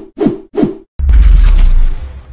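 Sound effects for animated end-card graphics: three quick whooshes, each falling in pitch, then about a second in a loud hit with a deep rumble that holds for about a second and fades.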